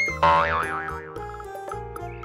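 Cartoon 'boing' sound effect: a loud wobbling tone that starts about a quarter second in and fades within a second. It plays over bouncy children's background music.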